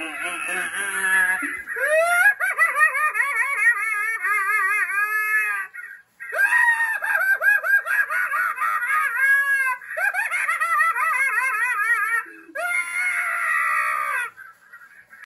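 Spirit Halloween Night Stalker animatronic scarecrow playing its maniacal laughing sound effect. The laugh comes in several long runs with short breaks between them.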